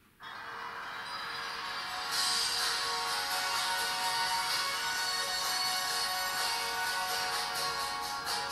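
Karaoke backing track starting suddenly: a song's instrumental intro, growing fuller and brighter about two seconds in and then running on at an even level.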